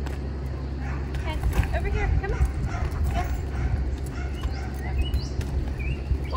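A German Shepherd whining in a string of short, bending calls over a steady low rumble; the dog is nervous.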